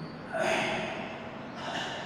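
A man's two short, noisy breaths, the first sudden and louder, fading over most of a second, the second shorter and higher near the end.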